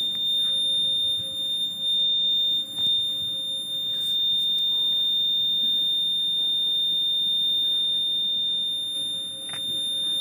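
Buzzer of a homemade water-tank level indicator sounding one steady, high-pitched tone without a break: the signal that the tank is full.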